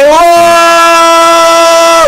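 A man's loud, sustained vocal cry on 'oh', rising slightly in pitch at the start and then held on one steady note throughout.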